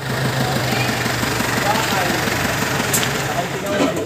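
Dump truck engine running steadily at idle, a constant low hum under a noisy wash.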